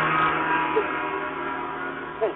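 A gong ringing with many held tones and slowly dying away, the signal that the programme's time is up.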